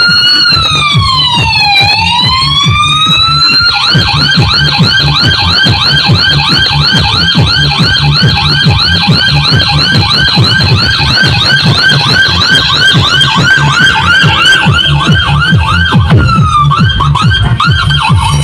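Siren sound effect played loud through a large stacked street sound system over a steady bass beat. It starts as a slow wail falling and rising in pitch, then switches to a rapid yelp of quick repeated rising sweeps that slows near the end.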